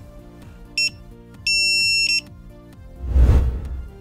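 Edited-in electronic beep effects over quiet background music: a short beep about a second in, then a longer held beep. Near the end comes a deep whooshing hit, the loudest sound here.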